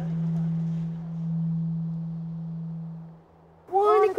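A single low sustained drone tone from the score, swelling and easing, then fading out about three seconds in. Near the end, voices start chanting the clock count of the game.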